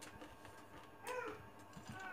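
A cat meowing once, a short bending call about a second in.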